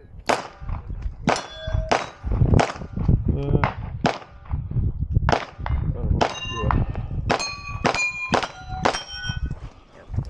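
A string of pistol shots at steel targets: about fifteen sharp cracks at an uneven pace, many of them followed by the ringing clang of a struck steel plate.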